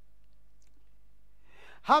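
A pause with a steady low electrical hum and no other sound. Near the end comes a quick breath in, and a man starts reading aloud.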